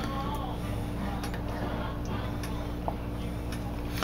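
Wooden spoon stirring thick soup in an enamelled pot: faint scraping with a few light knocks of the spoon, the sharpest about three seconds in, over a steady low electrical hum.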